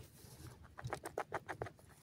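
Grey francolin in a dust hollow: a brief soft rustle, then a quick run of about seven short, soft notes, around seven a second, starting about a second in.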